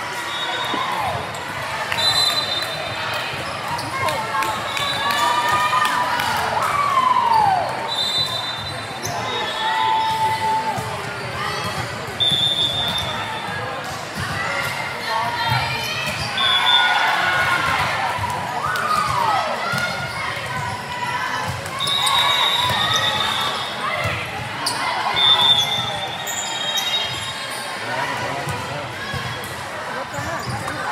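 Busy indoor volleyball hall: short referee whistle blasts from several courts, a few seconds apart, over balls being hit and bouncing on the hard floor. Players' voices and calls echo in the large hall.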